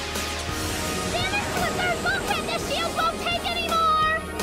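Anime soundtrack mix: background music over a steady noisy rumble, with many short warbling chirps coming in from about a second in.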